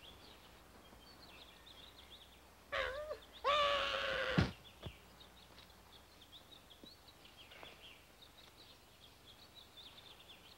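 Faint bird chirping runs through outdoor ambience. About three seconds in there is a short, loud, pitched cry, followed by a longer one that drops away sharply in pitch and cuts off.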